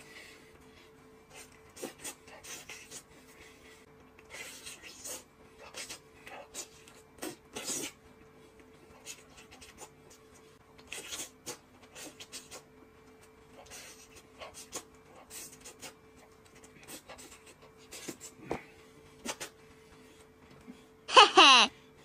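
Close-up eating sounds: soft, irregular smacks, slurps and clicks of chewing and tearing meat from a cooked chicken drumstick, over a faint steady hum. Loud laughter breaks in near the end.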